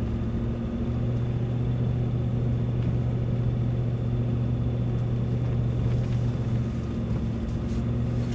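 A car being driven on a paved road, heard from inside the cabin: engine and road noise making a steady low drone.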